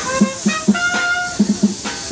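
Trumpet playing a song melody: quick short notes, then one note held for about half a second near the middle, over a low, uneven rhythmic beat.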